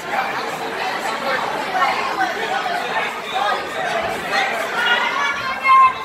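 Indistinct chatter of several voices talking over one another in a large room, with one short, loud call near the end.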